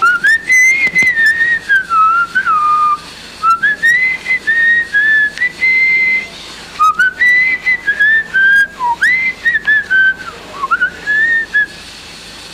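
A person whistling a wandering tune in four phrases, the pitch sliding up and down between notes, with short breaks between phrases.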